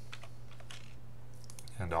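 A few faint clicks from a computer mouse and keyboard over a steady low hum.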